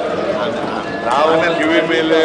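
Men's voices talking in a large chamber, with a rapid patter of knocks under the speech.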